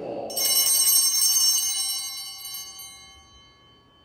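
Altar bells (sanctus bells) rung at the altar. A cluster of high, bright ringing tones is struck several times in quick succession for about two seconds, then rings out and fades. This is the bell that marks the epiclesis, as the priest calls down the Spirit on the gifts just before the consecration.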